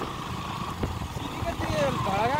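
Motorcycle engine running steadily while riding along a road, a low pulsing rumble, with a person's voice over it.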